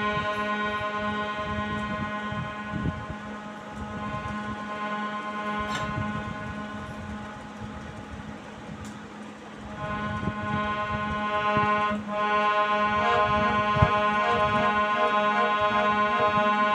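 Harmonium played solo, without singing: held chords that fade down in the middle, then swell back from about ten seconds in, with quicker-changing notes near the end.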